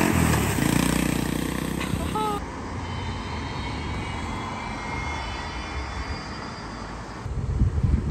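The small engine of a Massimo mini-Jeep UTV runs steadily and fades as it drives away over the first couple of seconds. Then comes quieter street background, and near the end an Alfa Romeo SUV's engine and tyres grow louder as it approaches.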